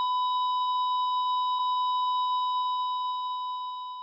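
A patient monitor's continuous electronic tone, one steady high pitch, easing off slightly near the end.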